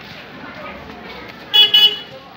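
Car horn honking near the end, a loud double toot about half a second long in all, over a background murmur of voices.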